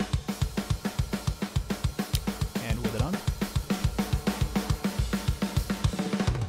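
Sampled metal drum kit from Toontrack Superior Drummer playing back a fast pattern: rapid, even kick drum hits about six a second under snare and cymbals. This is the drum mix heard without its 1176 parallel-compression bus, so it has less sustain and fill.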